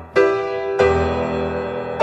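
Piano playing slow, sustained chords, two of them struck in quick succession near the start, each left to ring and fade.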